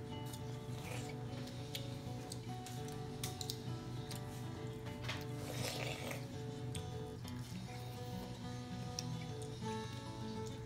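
Soft background music of held, slowly changing notes, with children biting into and chewing raw watermelon heard as scattered short, wet clicks.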